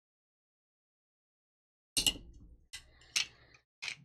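Silence for about two seconds, then a sharp click and a few lighter clicks and rattles: a battery being seated in a box mod and the mod's battery door being fitted back on.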